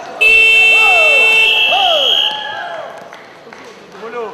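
Electronic scoreboard buzzer sounding one steady, loud tone for about two seconds, signalling the end of the wrestling bout, with crowd voices shouting underneath.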